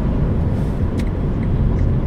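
Car cabin road and engine rumble while driving, steady and loud. A single sharp click comes about halfway through, followed by faint, even ticking about three times a second.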